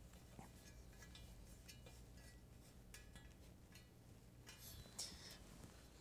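Near silence with faint scattered clicks and a soft knock about five seconds in: the wing nut at the pivot of a metal X-frame keyboard stand being tightened and the stand settled.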